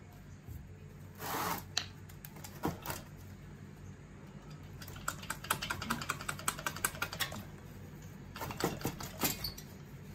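Metal parts of a partly stripped air-cooled VW engine's cylinder being worked by hand: scattered knocks and clinks, with a quick run of light metallic clicking, about ten a second, for a couple of seconds about halfway through.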